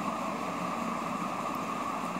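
Steady background hum of room noise with no clear events, the kind of constant sound a fan or air conditioner makes.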